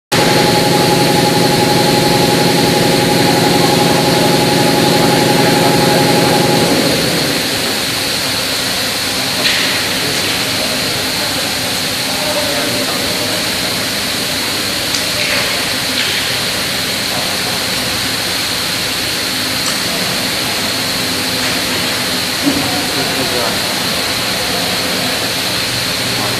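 CNC plasma tube-cutting machine running: a loud, steady hiss with a high steady whine. For about the first seven seconds a low humming drone of several steady tones runs underneath, then stops. A few faint clicks follow.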